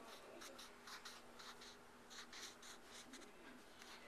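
Faint scratching of a child coloring on paper, a quick run of short strokes.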